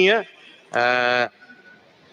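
A man's voice holding one drawn-out vowel for about half a second, level in pitch, in a pause between words.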